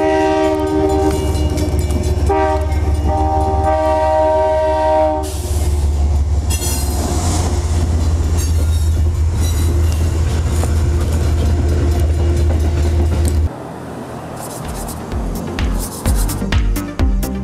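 Amtrak diesel locomotive sounding its horn for the grade crossing in two long blasts, the second the longer, then the loud low rumble of the train passing close by. The rumble cuts off suddenly about 13 seconds in.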